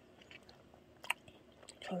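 Faint chewing of juicy mandarin segments, with a few soft mouth clicks and one sharp click about a second in.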